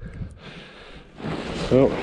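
A man breathing hard from the exertion of clearing snow, with a sharp, loud intake of breath a little past halfway through, just before he speaks.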